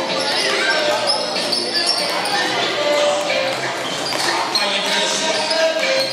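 Several basketballs bouncing on a hardwood gym floor, over a steady chatter of voices in a reverberant gym.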